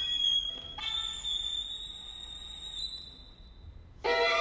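Unaccompanied violin holding a single very high, thin note that steps up slightly about a second in and then slowly fades away. Loud playing resumes right at the end.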